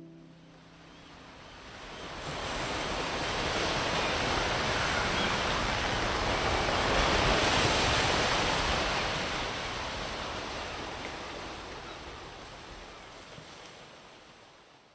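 Ocean surf sound effect: one long rushing wash of water that swells up over the first few seconds, peaks near the middle and slowly fades out.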